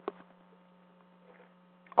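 Steady low electrical hum on the audio line, with a single short click at the start.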